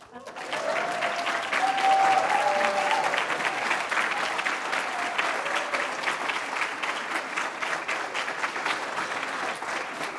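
Audience applauding, a dense run of clapping that keeps going, with a few voices calling out in the first three seconds.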